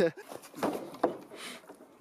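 A man laughing breathily, with one sharp knock about a second in.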